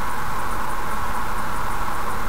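Steady tyre and road noise from a car cruising at about 77 km/h on a motorway, heard from inside the cabin as an even hiss centred in the mid range over a low rumble.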